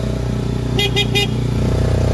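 Small vehicle engine running steadily, heard from inside the passenger cabin, with three quick horn beeps about a second in.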